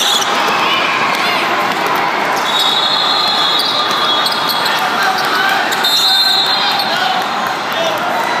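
A basketball dribbled and players' shoes on a tiled sport court, echoing in a large hall full of people. A whistle sounds in two long, steady blasts, about two and a half seconds in and again around six seconds, as a scramble for the ball puts players on the floor.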